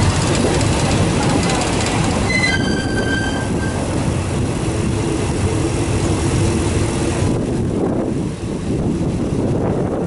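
Passenger train running along the track, heard through an open carriage window: a steady, loud rumble and rattle of the wheels on the rails. About two and a half seconds in there is a brief high squeal.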